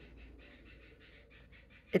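Common myna birds chattering faintly in a quick, even run of short calls, about five or six a second.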